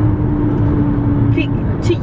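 Steady road and engine noise heard inside a car's cabin while cruising at freeway speed, with a steady low hum over it for most of the stretch.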